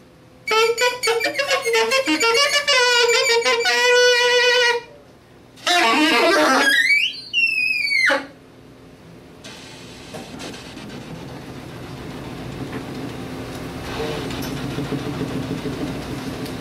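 Saxophone in free improvisation: a long wavering note with a rich, buzzy tone, then a squealing glide that rises steeply into very high notes. For the last six seconds it turns to a rough, breathy noise that slowly grows louder.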